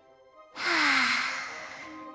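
A long breathy sigh of a person's voice, starting about half a second in, loud at first and trailing off, with the voice falling slightly in pitch. Soft background music plays underneath.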